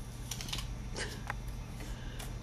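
A child chewing a bite of crisp apple: a few faint, sharp crunches, a little irregular, over a steady low hum.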